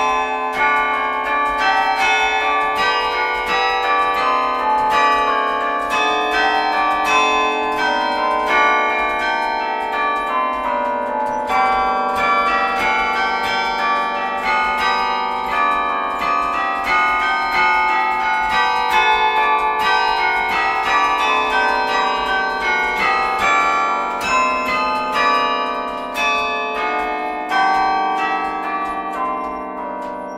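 Carillon bells struck from the baton keyboard, playing a tune of many quick notes that ring on and overlap one another.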